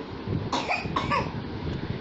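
A woman coughs twice in quick succession, two short bursts about half a second apart.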